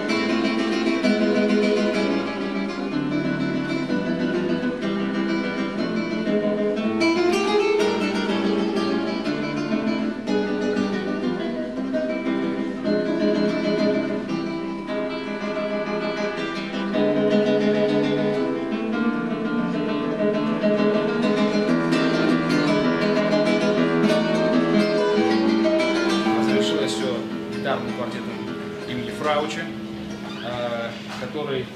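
Solo classical guitar played live, a continuous run of quickly plucked nylon-string notes and chords.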